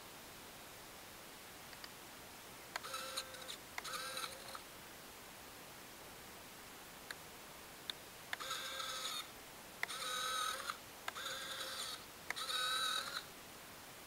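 Retractable landing gear servos on a small electric RC warbird whining as the gear is cycled up and down. There are six short whirs in three pairs, with a few light clicks between them, as the retracts are tested after a rough landing.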